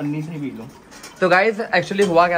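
A person's voice humming or crooning without words: a held note, then a warbling tone that wavers up and down.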